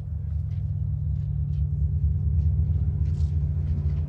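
A low, steady rumbling drone that slowly swells in level, with a few faint soft ticks above it.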